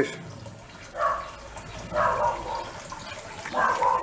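Water trickling and gurgling in a small pot still's pump-fed cooling loop, coming back from the condenser hoses into the bucket, with a few louder surges about one and two seconds in.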